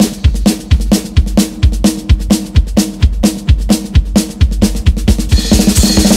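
Drum kit playing a fast, steady beat of bass drum and snare on its own at the start of a folk-punk song. It thickens into a drum roll near the end.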